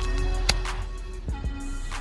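Background hip-hop music: a beat over a steady bass, with a sharp hit about half a second in.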